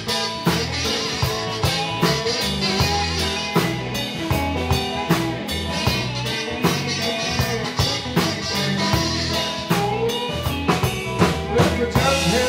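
Live blues band playing an instrumental break: drum kit, bass and electric guitars, with a harmonica played into a cupped handheld microphone, its notes bending up and down.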